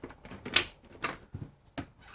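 Four sharp, irregularly spaced clicks, the first the loudest.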